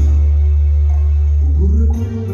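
Live bolero accompaniment on an electronic keyboard: a deep bass note and chord held for about two seconds with no beat under it. A man's singing voice comes back in near the end.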